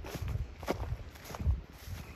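Footsteps of a person walking on mown grass: a few soft, irregular thuds, the loudest about one and a half seconds in.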